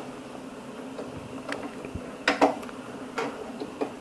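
A few small plastic clicks from the monitor's rear OSD joystick and buttons being pressed, the clearest a quick pair about two and a half seconds in.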